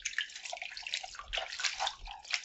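Water splashing and dripping in a bowl as hands scrub an apple in soaking water: irregular small splashes with no steady stream.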